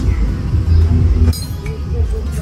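A small glass sand-art bottle clinks once, a little over a second in, over a steady low rumble.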